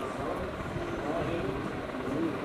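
Faint, indistinct voices in a room over a steady low rumble.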